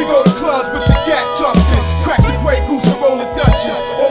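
Hip hop track with rapped vocals over a beat of drums and deep bass notes. A high tone glides up during the first second and then slowly falls, a figure that repeats in the loop.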